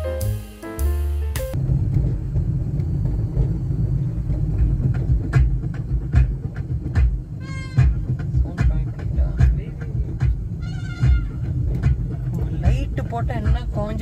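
Background music cuts off about a second and a half in. It gives way to a car's in-cabin rumble as it drives along an unpaved dirt road, with frequent knocks and rattles from the bumpy surface. Two short high-pitched sounds come through, one past the middle and one near three-quarters of the way.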